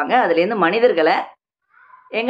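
A woman's voice speaking with a rising and falling pitch for just over a second, then stopping in a pause.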